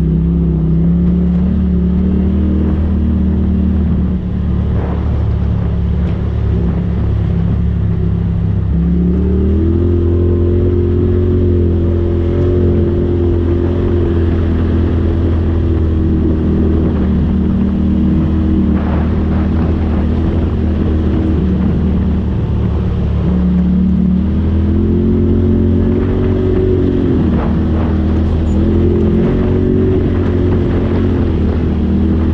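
Polaris RZR Turbo side-by-side being driven along a dirt trail, its engine running steadily. The engine rises in pitch about nine seconds in as the machine speeds up, then twice eases off briefly and picks up again near the end.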